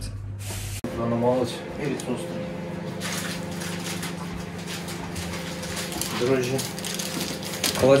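A steady machine hum made of several even tones, with rustling and handling noises from about three seconds in and a few short murmured words.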